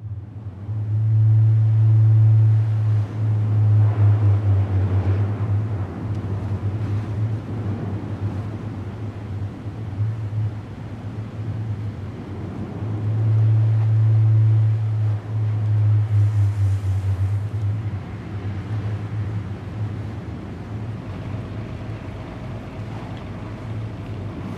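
Ocean surf washing, with a deep steady rumble underneath that swells louder twice, about a second in and again about halfway through.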